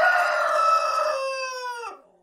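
A rooster crowing: one long, held cock-a-doodle-doo that drops in pitch at the end and then stops.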